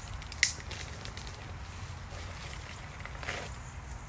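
A pepper plant being pulled up out of garden soil by its roots: a sharp snap about half a second in and a fainter rustle a few seconds later, over a low steady rumble.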